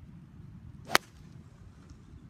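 A MacGregor 693T golf club striking a golf ball in a full swing: one sharp crack about a second in.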